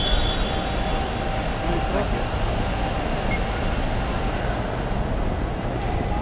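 Steady airport ambience: a continuous low rumble and hiss with distant voices and a faint steady hum.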